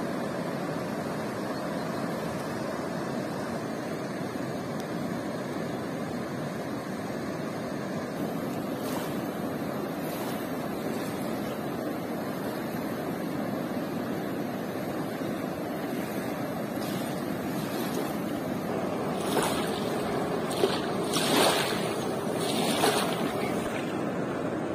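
Steady rushing of a swollen river pouring over a weir, with a few louder bursts of noise near the end.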